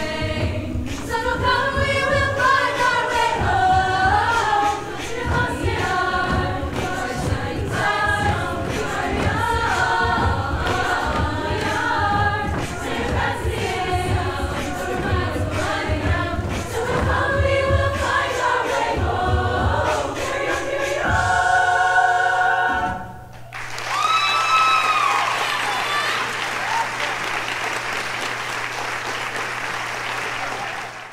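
Mixed-voice choir singing a pop arrangement a cappella, closing on a held chord that breaks off about 23 seconds in. Audience applause follows, with a high whooping cheer at its start.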